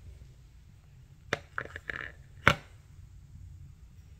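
A resin coaster being set down on a concrete surface: a short run of sharp clicks and knocks, ending in one louder knock about two and a half seconds in.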